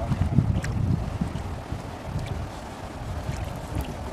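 Water sloshing and churning around people wading waist-deep through a muddy stream, with wind buffeting the microphone as an uneven low rumble.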